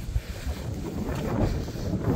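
Wind buffeting the phone's microphone in uneven gusts, a low rushing rumble.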